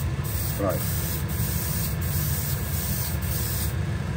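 An airbrush spraying a light tack coat of 2K clear coat onto a slot car body, a steady hiss of air and atomised clear, over a steady low rumble.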